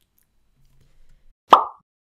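A single short pop sound effect: one sharp hit that dies away within about a quarter second.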